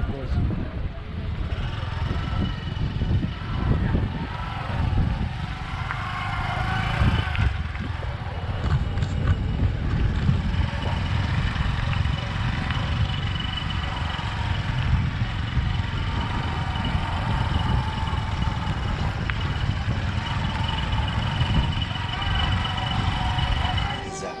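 Bodaboda motorcycle taxi under way: wind rushing over the microphone with the small motorcycle engine running underneath, a steady, loud rumble.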